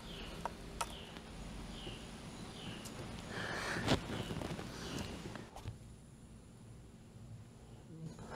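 Faint clicks and a light repeated squeak as a ratchet works the 10 mm coolant drain bolt out of a motorcycle water pump, with a brief louder rush of noise about four seconds in as the coolant is let out into the drain pan.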